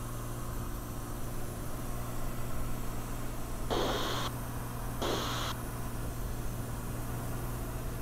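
Cirrus SR20's piston engine and propeller as a steady low drone under an even hiss inside the cabin in cruise flight. Two short bursts of hiss come near the middle, about a second apart.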